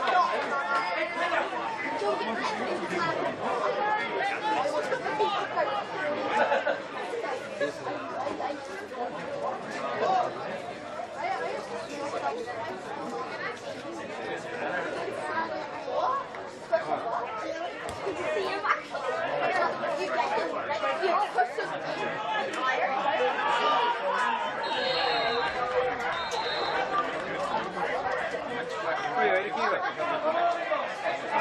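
Chatter of several spectators talking at once, the voices overlapping so that no words stand out.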